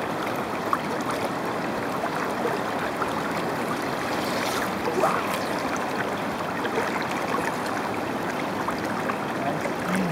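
Steady rush of a flowing river's current around a wading angler, with a few faint ticks over the top.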